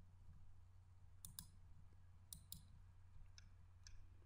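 Faint computer mouse clicks over a low steady hum: two quick double clicks about a second apart, then a couple of fainter single clicks.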